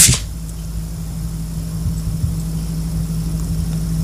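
A steady low hum with no separate events.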